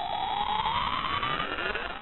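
A synthetic rising whine sound effect for an intro's loading-bar animation, climbing steadily in pitch and fading out at the end.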